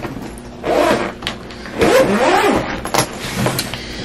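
Hard-shell spinner suitcase being shifted and tipped, its caster wheels whirring in rising and falling tones twice, with a few knocks from the shell.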